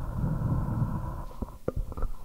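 Handling noise from a corded handheld microphone being passed from hand to hand: a low rumble, then a couple of sharp knocks about a second and a half in.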